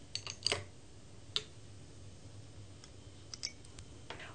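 Faint, scattered light clicks and taps of a glass beaker being handled and set on the pan of an electronic balance, with one sharper click a little over a second in.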